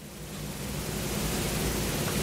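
A steady hiss of background noise that grows gradually louder, with a faint low hum underneath.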